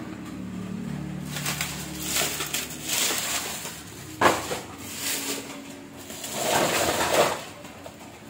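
Plastic packing-tape dispensers being handled and moved off a wooden desk: rustling and scraping in two spells, with one sharp plastic click about four seconds in.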